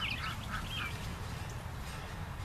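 A bird calling in a quick series of short chirping notes with swooping pitch during the first second, over a steady low rumble.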